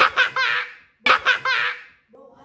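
A young girl laughing hard, in two bursts about a second apart.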